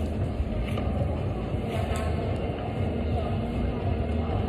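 Steady low rumble of a large indoor climbing-gym hall, with faint background voices.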